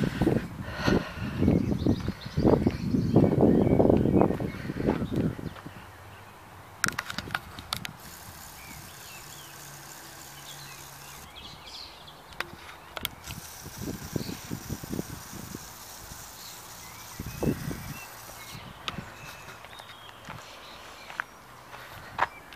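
Outdoor background picked up by a handheld camera: low rumbling buffets on the microphone for the first five seconds or so, typical of wind. After that it is quiet, with a few scattered clicks and soft thumps.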